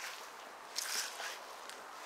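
Quiet outdoor garden ambience, a faint steady hiss, with one brief soft rustle about a second in.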